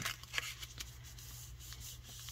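A paper envelope being handled and creased by hand: a few light rustles and taps in the first half-second, then faint rubbing as the fold is smoothed flat. A low steady hum runs underneath.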